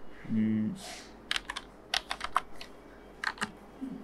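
Keys typed on a computer keyboard: a handful of sharp clicks in three small clusters as a short word is entered.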